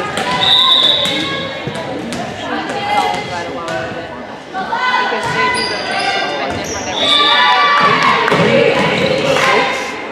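Volleyball serve and rally in a gym: sharp smacks of hands on the ball, with players and spectators shouting and calling throughout, loudest near the end.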